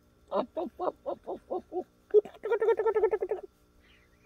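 A man's maniacal villain laugh: a run of about eight short 'ha' bursts falling slightly in pitch, then a faster, rapidly pulsing cackle for over a second that cuts off abruptly about three and a half seconds in.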